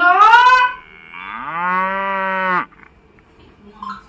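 Two loud, pitched animal-like calls: a short one that rises and falls in pitch, then a longer one that climbs and holds steady before cutting off suddenly.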